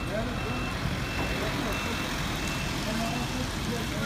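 Repeated high electronic warning beeps, about one and a half a second, over the running of a Mercedes-Benz minibus, with voices in the background.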